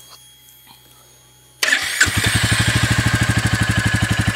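A 2022 Royal Enfield Classic 350's single-cylinder engine is started on its electric starter about one and a half seconds in. After a brief crank it catches and settles into a steady, evenly pulsing idle through the exhaust, a normal start. Before the start there is only a faint hum and a few small clicks.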